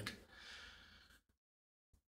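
Near silence: a faint breath intake just after half a second in, then dead silence on the track.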